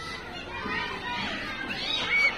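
Schoolchildren talking and calling out in the background, several voices overlapping.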